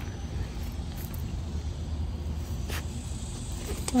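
A Rottweiler nosing and pushing at loose soil to bury a bone, with a few faint scuffs, over a steady low rumble.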